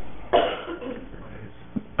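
A person coughing once, briefly, about a third of a second in, followed by low room noise.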